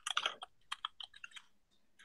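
Typing on a computer keyboard: a quick run of keystrokes over the first second and a half, then it stops.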